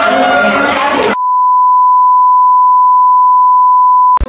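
A single steady electronic beep tone at one pitch, starting abruptly about a second in and holding for about three seconds. It is preceded by a second of music with voices.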